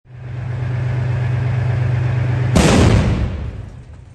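Russian T-90M tank's diesel engine running steadily, then its 125 mm main gun fires once about two and a half seconds in: a loud blast that dies away over about a second while the engine keeps running.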